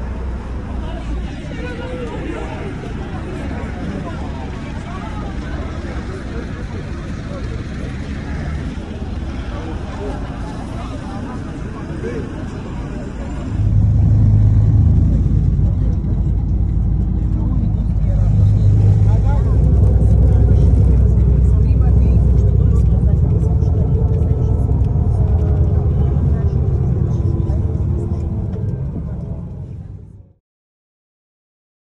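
Crowd of passengers talking over one another as they push to board a city bus, with street noise. About halfway through, the sound changes suddenly to the inside of the packed bus: a loud, low, steady rumble of the bus under the passengers' chatter.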